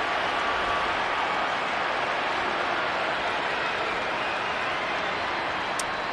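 Steady ballpark crowd noise from the stadium stands, an even wash with some applause in it.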